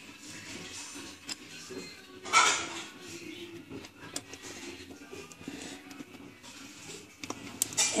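Plastic Lego bricks clicking and clattering as they are handled and pressed together, with a louder burst of noise about two and a half seconds in and several sharp clicks near the end.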